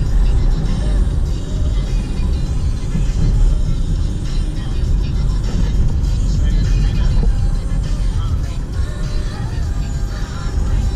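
Steady low rumble of a small Mazda hatchback on the move, engine and road noise heard from inside the cabin, with music playing over it.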